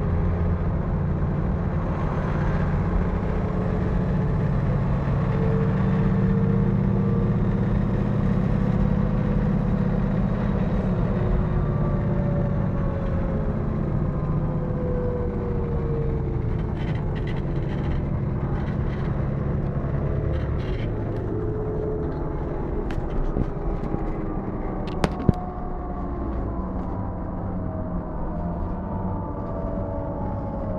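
Cabin sound of a Mercedes-Benz O405N2 city bus running at motorway speed: the steady rumble of its OM447hLA six-cylinder diesel and the road, with whining drivetrain tones that drift up and down in pitch. Near the end the pitch falls as the bus slows, and a single sharp click sounds late on.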